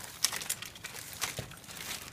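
Clear plastic bag crinkling as hands handle it to take out the antennas, in a run of light, irregular crackles.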